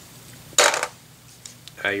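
A handful of plastic Lego bricks dropped into a clear plastic tub, clattering briefly about half a second in.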